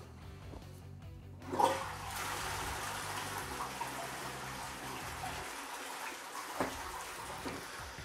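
Toilet flush: the push-button cistern of a close-coupled ceramic toilet is pressed and water rushes into the bowl and swirls down, starting suddenly about a second and a half in and running steadily.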